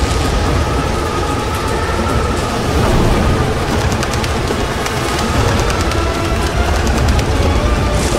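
Produced tornado sound effect: a loud, steady rushing roar, heaviest in the low end, with rapid crackling like flying debris through the middle, under a score of sustained music notes.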